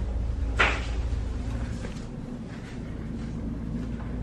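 A steady low hum with one brief clunk about half a second in.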